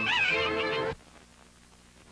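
Cartoon cats meowing over the orchestral score for about a second. The music and meows cut off suddenly, leaving near silence with a faint low hum.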